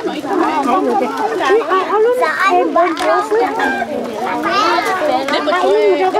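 A crowd of children talking and calling out over one another, many high voices at once.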